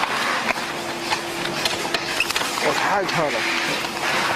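Workshop ambience: a steady hum and hiss with scattered light clicks, and indistinct talk about three seconds in.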